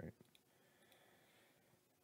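Near silence, with a couple of faint short clicks in the first half second.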